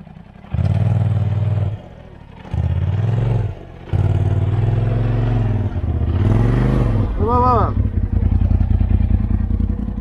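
Polaris RZR Pro UTV engine revving in two short bursts, then running on under throttle with its pitch rising and falling as the machine is backed up into position for a tow. A brief shout is heard near the end.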